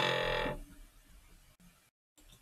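A man's voice making a brief, steady-pitched held hesitation sound, like a drawn-out "uhh", lasting about half a second at the start. It is followed by faint low room hum.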